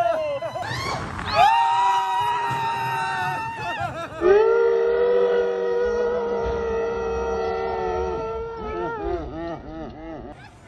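Riders on a wild mouse roller coaster letting out two long, held cries of 'oh': a higher one about a second in and a lower one from about four seconds in, breaking into short wavering cries near the end.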